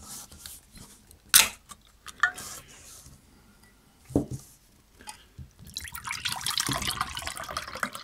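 A ring-pull drinks can snapping open with one sharp click about a second and a half in, followed by a short hiss. From about six seconds in, milky tea pours steadily from the can into a glass tumbler.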